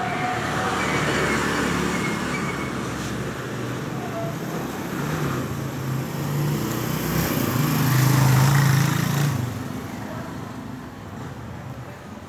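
Motor vehicle engine and street traffic noise, swelling to its loudest about seven to nine seconds in, then fading away.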